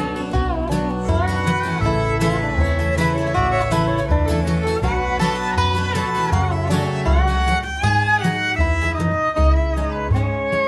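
Acoustic string band playing an instrumental break: a lap-style resonator guitar (dobro) played with a slide bar and a bowed fiddle carry gliding melody lines over acoustic guitar and upright bass.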